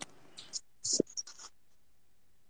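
A pause in the talk: a few faint, short scratching and clicking noises in the first second and a half, then near silence.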